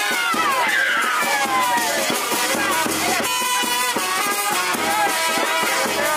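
Music with a steady, repeating low beat and a melody that glides down in pitch.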